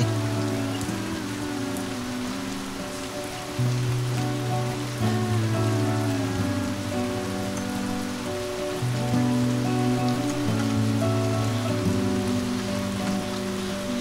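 Soft background music of sustained low chords that shift every second or two, over a steady hiss.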